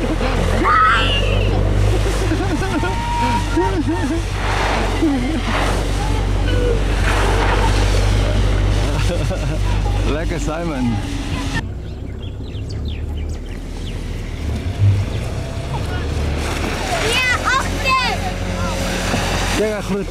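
Children's voices calling out over the steady low rumble of the vehicle towing them.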